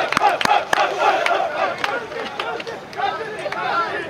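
A huddled group of football players shouting together, many male voices at once, with scattered sharp claps that are thicker in the first second.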